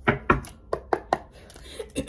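A throat clear, then a few short, sharp clicks from a deck of tarot cards being shuffled by hand.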